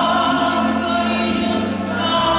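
A woman singing long held notes into a microphone over live instrumental accompaniment.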